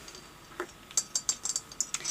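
Coins rattling inside a ceramic owl-shaped piggy bank as it is shaken: a quick run of light clinks that starts just after half a second in and thickens through the second half.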